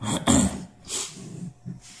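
A man coughing: one loud cough just after the start, then two weaker coughs.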